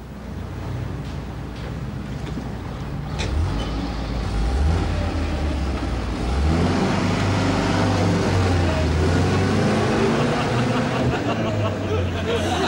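A van's engine running and revving, growing louder about halfway through.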